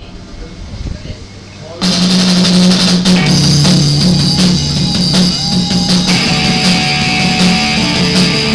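Live rock band kicking in loudly together about two seconds in: drum kit and electric guitar over a line of low repeated notes, after a short lull of room noise.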